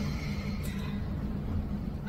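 Low, steady background rumble with a faint hum, and no speech.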